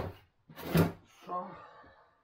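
Freezer drawers sliding and being pushed shut, two short noisy strokes a little under a second apart.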